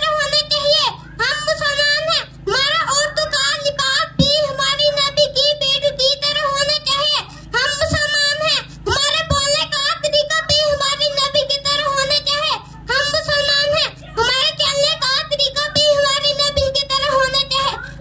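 A young boy singing solo into a microphone, his voice amplified over a PA speaker, with no instruments. He holds long, wavering notes in phrases of a few seconds, pausing briefly for breath between them.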